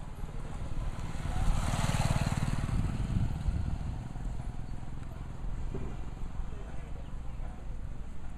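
A motor vehicle's engine running close by, with a swell of passing noise that peaks about two seconds in and then settles to a steady low rumble.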